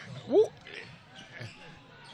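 A basketball dribbling on a hardwood gym floor under the faint background of a gym during a game, with a short rising voice about half a second in.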